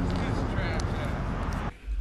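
Outdoor street noise from traffic, with people's voices mixed in, cutting off suddenly near the end.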